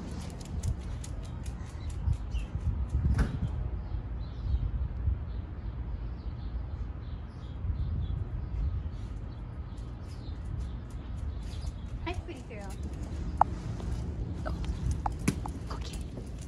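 Footsteps and light clicks on a concrete dog run over a low steady rumble. The clicks come thick in the first few seconds and again near the end.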